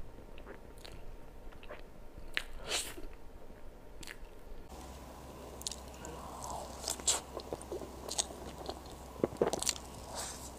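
Close-miked chewing and biting of soft mille crêpe cake, with many small wet mouth clicks. A low steady hum comes in about halfway through.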